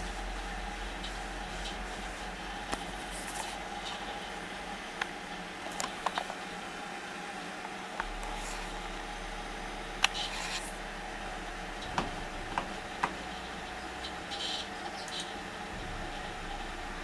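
Steady hum and fan noise of a running desktop computer, broken by scattered single mouse clicks, about a dozen spread irregularly through the stretch.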